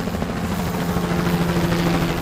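Helicopter sound effect: a fast, steady rotor chop over a low hum.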